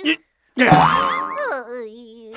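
Cartoon 'boing' sound effect: a sudden hit about half a second in, then a springy, wobbling pitch that settles into a steady held tone.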